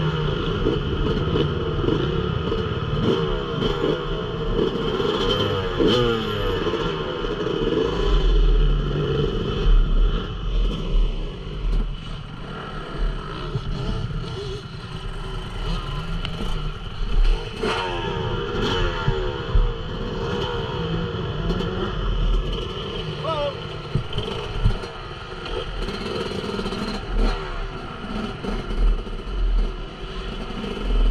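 Yamaha YZ250 two-stroke motocross bike's engine running at idle with occasional revs, while other motocross bikes rev up and down around the track.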